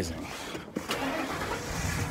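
Car engine running, heard from inside the cab as a steady low hum with hiss.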